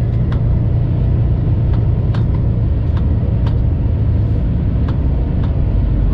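Semi truck's diesel engine running at low speed, heard inside the cab as a steady low rumble, with a few faint, irregular clicks.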